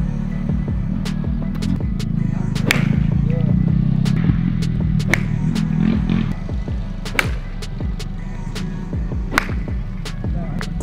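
Background music with a steady beat, over which a baseball bat cracks against a ball four times, about every two seconds.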